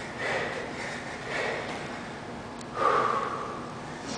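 A man breathing hard from exertion during rapid box jumps: three forceful exhalations about a second apart, the loudest near the end.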